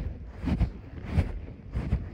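A horse moving under a rider: three evenly spaced thuds, a little under a second apart, from its footfalls jolting the body-worn camera, with wind blowing on the microphone.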